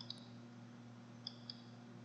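A few faint computer mouse clicks, the last two about a quarter second apart, over a quiet room tone with a low steady hum.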